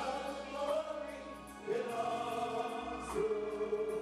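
A gospel praise team of men and women singing together into handheld microphones, holding long notes.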